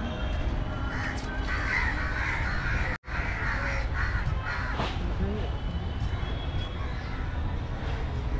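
Crows cawing several times in the first half, over a steady outdoor din with distant voices and a low rumble. The whole sound cuts out for an instant about three seconds in.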